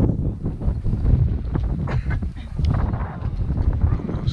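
Wind buffeting the microphone in a low, uneven rumble.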